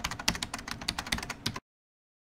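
Typing sound effect: a quick run of keystroke clicks that ends abruptly after about a second and a half, accompanying on-screen text being typed out.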